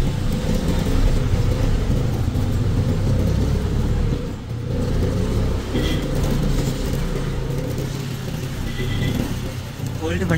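Steady low engine rumble of a motor vehicle, with a short dip about four and a half seconds in and two brief high beeps about six and nine seconds in.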